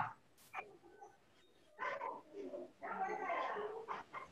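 A nearly silent start with one short click, then a person's voice speaking quietly from about two seconds in.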